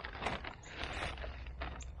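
A plastic bag of granular 10-10-10 fertilizer rustling and crinkling as a hand scoops out the pellets, in a few short irregular strokes over a low steady rumble.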